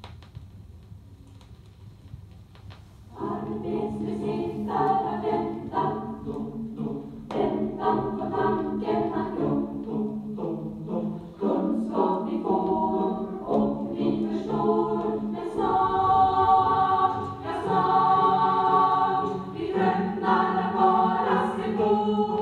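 Student choir singing in Swedish, played from a vinyl LP, with the sound of an old recording. The first few seconds are quiet with a few faint clicks, then the choir comes in about three seconds in and holds sustained chords.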